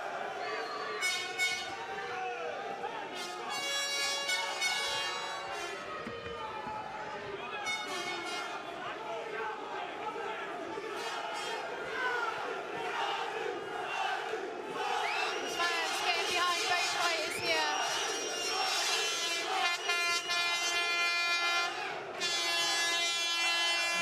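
Arena crowd at a kickboxing bout shouting and cheering. Many voices overlap, with pitched calls and shouts that grow louder and more sustained in the second half.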